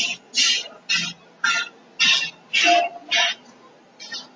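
Choppy, garbled bursts of a voice breaking up over a failing internet call, about two a second and mostly hiss, with no words getting through: the sign of a connection slowed to a crawl.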